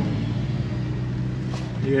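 Inside the cabin of a Toyota sedan crawling in slow traffic: the engine hums steadily and low, with faint road noise.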